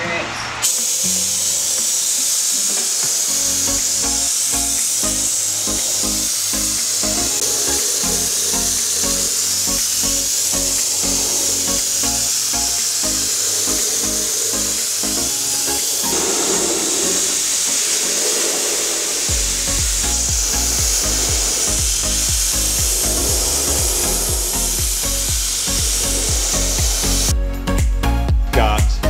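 Background music with a steady beat over the continuous hiss of a cheap HVLP paint spray gun spraying; a heavier bass comes in about two-thirds of the way through.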